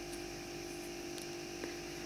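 Quiet room tone with a steady low electrical hum, broken by a couple of faint ticks in the second half.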